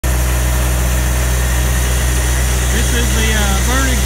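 Diesel engine of a 47-horsepower Branson tractor running steadily, a low, even hum.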